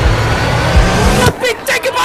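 Men's voices talking over street noise, with a loud low rumble on the microphone. About a second and a half in, the sound cuts abruptly to another man speaking.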